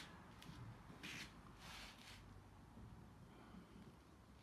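Near silence: room tone with a couple of faint, brief soft hiss-like sounds about one and two seconds in.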